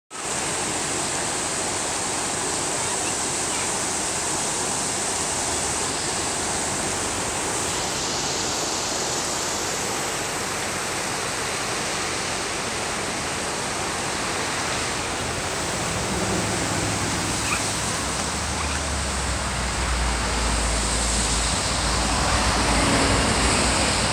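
Rushing whitewater of a fast mountain river, a steady full roar of water. A low rumble joins it over the last several seconds.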